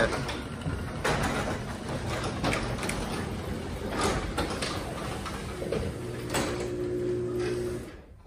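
Chamberlain RJO20 wall-mounted direct-drive garage door opener lowering an aluminium-and-glass sectional door, which the owner calls super quiet. The rolling of the door in its tracks brings scattered light clicks over a low motor hum, and all of it cuts off suddenly just before the end as the door closes.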